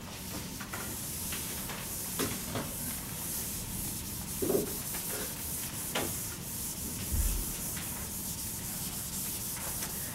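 Dry-erase eraser rubbing across a whiteboard in repeated wiping strokes, a steady scrubbing sound, with a few soft knocks along the way.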